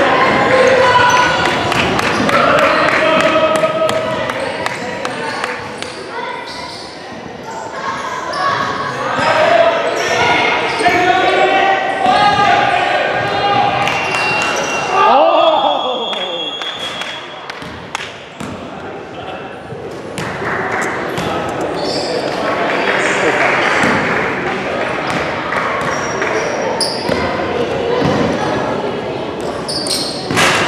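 Youth basketball game in an echoing gym: a basketball bouncing on the hardwood court under a steady mix of players' and spectators' voices calling out, with a few short high squeaks near the middle.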